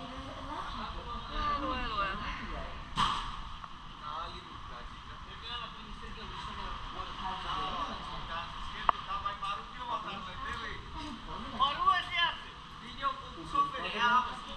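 Indistinct voices on and off over a steady low rumble on a ferry's open deck, with a sharp knock about three seconds in and a smaller click near nine seconds.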